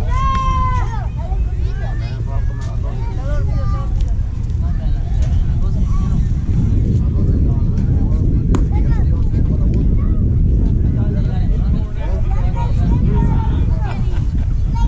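Wind rumbling on an outdoor camera microphone, with distant voices calling and chattering across a ball field. One loud drawn-out shout comes in the first second.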